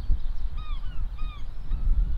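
Low, gusty wind rumble on the microphone, with a bird giving two short arched calls about half a second apart and another call near the end.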